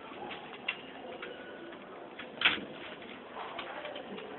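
Small clicks and taps of plastic and metal parts as a laptop is worked on by hand, with one sharper, louder click about two and a half seconds in.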